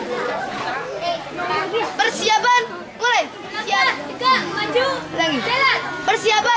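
A crowd of schoolgirls chattering and calling out all at once, many high voices overlapping, with louder, higher calls from about two seconds in.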